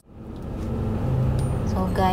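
Road noise inside a moving car's cabin, fading in over about the first second, with a woman's voice starting near the end.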